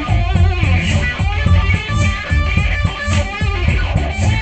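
Funk music: an electric guitar lead bending notes over a steady bass and drum groove.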